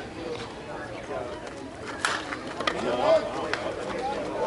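Softball bat striking a slowpitch softball once with a sharp crack about halfway through, followed by men's voices calling out.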